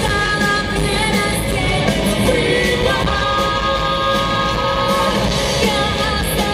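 Live rock band playing: electric guitars, bass and drums under lead vocals, with long held sung notes in the middle.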